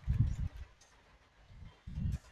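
Computer keyboard typing, with faint key clicks, under two short, muffled, low thumps: one in the first half-second and one near the end.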